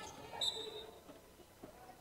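Faint sounds of basketball play in a gym, with one brief high-pitched squeak about half a second in.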